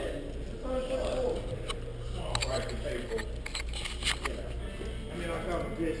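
Background voices and music over a steady low hum, with a few sharp clicks in the middle.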